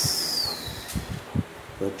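A man's long breathy exhale with a thin whistle that falls in pitch over about a second, like a weary sigh through pursed lips, followed by a couple of soft knocks.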